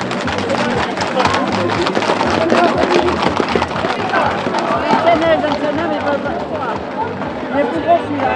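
Hooves of a galloping group of Camargue horses clattering on the asphalt street, mixed with a crowd's shouts. The hoof clatter is densest in the first half and thins out; the shouting goes on.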